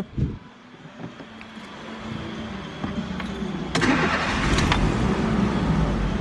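Fiat Fiorino van's 1.4 flex four-cylinder engine being started: it catches suddenly about four seconds in and settles into a steady idle.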